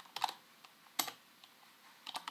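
A few keystrokes on a computer keyboard: a short cluster of taps near the start and a single sharper tap about a second in.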